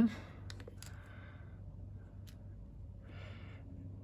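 Quiet room with a steady low hum, a few faint clicks from handling a sensor loupe against a camera body, and two soft breaths, about a second in and near the end.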